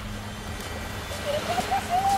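A high-pitched voice calling out in short rising-and-falling sounds, starting about a second in, over a low rumble.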